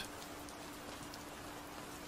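Faint, steady rain-like hiss in the pause between narrated lines, with a faint steady hum underneath.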